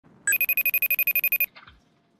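Electronic telephone ring: a loud, rapid high-pitched trill of about ten short beeps a second, lasting a little over a second and stopping abruptly.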